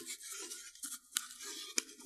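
Crochet cotton thread being wound around an inflated balloon: faint scratchy rubbing of the thread over the rubber, with a few light clicks.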